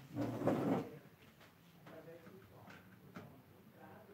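A short, loud rustling clatter lasting under a second near the start, then faint knocks and a faint voice.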